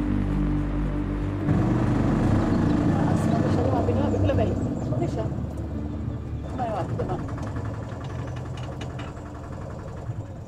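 An auto-rickshaw (tuk-tuk) engine running at idle with a fast, even beat, alongside indistinct voices. Music fades out in the first couple of seconds.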